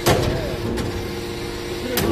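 Hydraulic metal-chip briquetting press running with a steady hum. There is a sharp metallic clank right at the start, a fainter click about three-quarters of a second in, and another sharp clank near the end.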